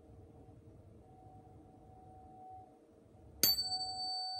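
A 741 Hz tuning fork, the one used for the throat chakra, hums faintly as its ring dies away. Near the end it is struck again with a sharp clang and rings out with a clear tone and bright high overtones.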